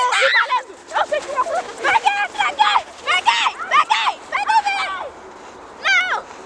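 Children shouting and squealing excitedly in short, high-pitched calls one after another, with a brief lull near the end.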